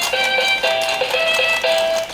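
Battery-powered dancing goose toy playing its electronic hip-hop tune through its small built-in speaker, a simple melody of short notes at about three a second.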